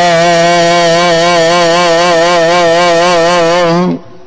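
A man's voice singing Gurbani kirtan, holding one long note with a slow vibrato over a steady low drone. The note cuts off sharply just before the end.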